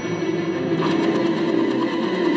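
Cartoon spinning sound effect: a rapid, evenly repeating mechanical whir that starts a little under halfway in, at about eight beats a second, heard through a TV's speaker.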